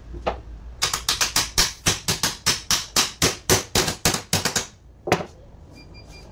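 A quick, even run of sharp taps, about four a second for some four seconds, then one more a little later, as a 24 V truck starter motor is tapped on its housing during reassembly.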